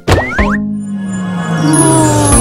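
Cartoon intro jingle at its normal speed and pitch: a sharp hit and two quick rising boing-like glides, then a held low tone sliding slowly downward under a sustained chord, with high twinkling sparkle coming in near the end.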